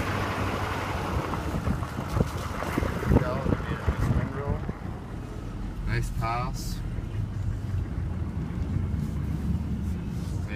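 Pickup plow truck's engine running steadily while driving, with a few sharp clicks and knocks about two to three seconds in.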